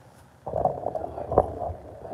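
Paper towel rubbing and scuffing over a bare wooden pouring board, starting about half a second in, with a single knock just before the middle.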